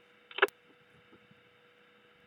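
Faint steady electrical hum on an amateur radio receiver's audio, with a short loud burst ending in a sharp click about half a second in, as a transmission cuts off.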